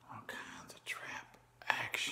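A man's breathy, whispered vocal sounds close to the microphone, in three short bursts.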